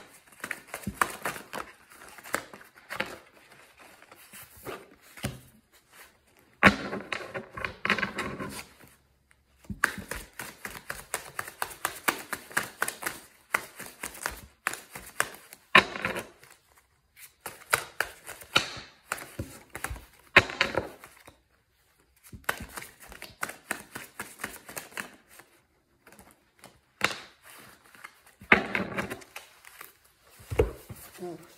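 A deck of tarot cards being shuffled by hand: quick runs of soft clicks and flicks in bursts, with short pauses between them.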